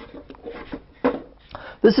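Quiet knocks and rubbing as wooden crate frames on a PVC-pipe column are handled. A man begins speaking near the end.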